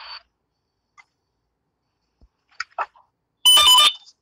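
A few faint clicks, then a short, loud electronic alert tone from the phone lasting about half a second near the end, made of several steady tones sounding together.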